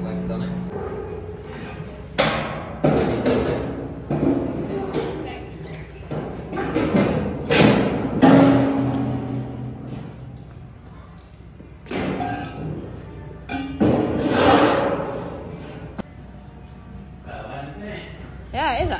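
A series of heavy thumps and metallic knocks, each ringing out briefly in a large echoing building, as a stainless-steel cattle water trough is handled and worked on with a long-handled tool. Background music is under it.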